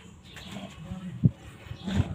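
A spatula working sticky bread dough in a stainless steel bowl, with uneven squelching and scraping and a sharp knock against the bowl just over a second in.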